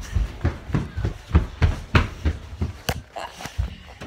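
Handling noise from a jostled phone: a run of irregular thumps and rustles, about two to three a second.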